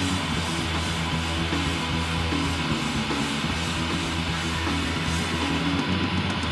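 Live rock band playing an instrumental passage without singing: electric guitar and electric bass over a drum kit with cymbals washing steadily, and a keyboard on stage. A short melodic figure repeats over a sustained bass line.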